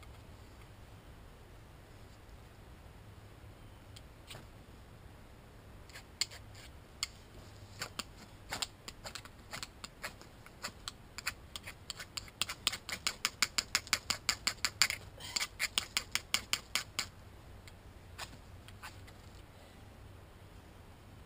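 Sharp crackling clicks as paper and kindling are being lit for a campfire. They start scattered, build into a quick, even run of about four a second, then die away.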